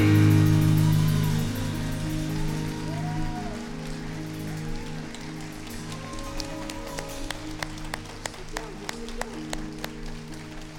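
A band's final sustained chord ringing out and slowly fading away. In the second half, scattered hand claps come in, a few a second.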